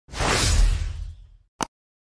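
Sound-effect whoosh that swells and fades over about a second, followed by a single short, sharp click.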